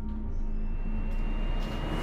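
Background music in an ambient sound-design passage: a low droning rumble with a thin high held tone, and a swell of noise that grows louder toward the end.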